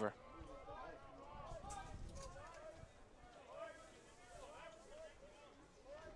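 Faint distant voices talking and calling out, with no single loud event.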